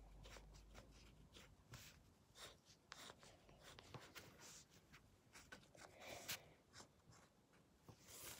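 Faint scratching of a felt-tip marker drawing on paper, in short irregular strokes, one a little louder about six seconds in.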